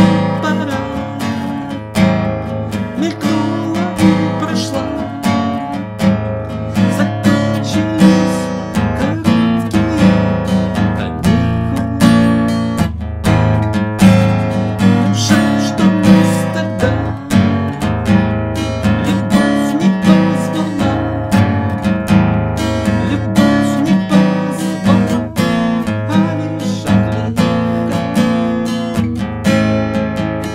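Acoustic guitar strummed in a steady rhythm, tuned a half step down, with a man singing along over parts of it.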